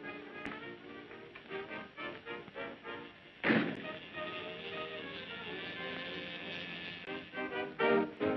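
Dance band music: short clipped notes, then a loud crash about three and a half seconds in that opens into a held chord, with clipped notes returning near the end.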